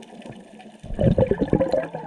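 Scuba diver exhaling through the regulator, heard underwater: a burst of bubbles gurgling out, starting about a second in.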